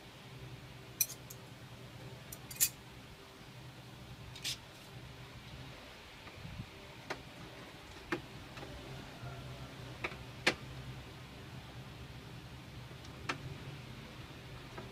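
Irregular sharp clicks and ticks of steel wire against a clear plastic container as the wire is threaded and twisted by hand, about eight in all, over a low steady hum.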